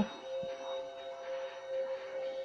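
Soft background music with a steady held tone from a TV drama's soundtrack, heard through a television's speaker and picked up by a microphone in the room.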